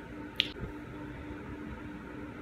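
A single finger snap about half a second in, over a faint steady hum.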